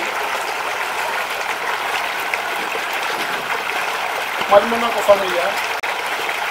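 A steady rushing noise, like running water, with a faint voice briefly heard a little after halfway.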